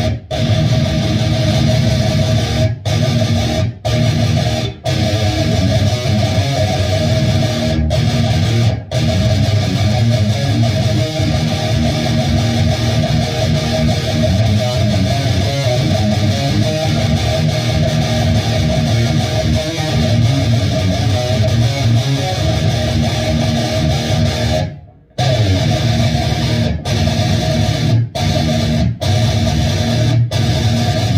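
Electric guitar played through a Line 6 240HC amp head into a Marshall cabinet, riffing and chugging. The playing breaks off in brief dead stops between phrases, the longest about 25 seconds in.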